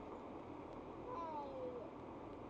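A short vocal call sliding down in pitch, heard twice in quick succession about a second in, over a steady low hum.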